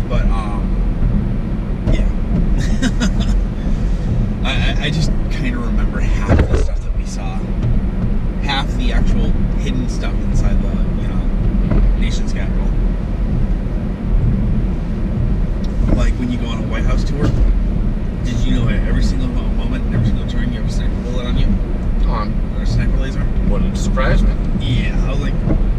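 Car cabin road and engine noise, a steady low rumble while driving, with people talking over it.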